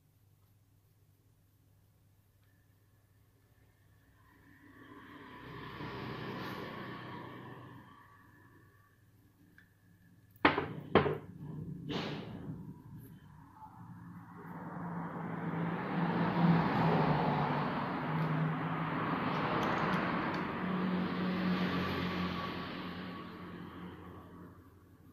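Handling noise as knit-gloved hands work a small screwdriver on the metal parts of a paracord survival bracelet: soft rustling and scraping, with three sharp metal clicks about ten to twelve seconds in, the loudest sounds, then a longer stretch of rustling and scraping that swells and fades.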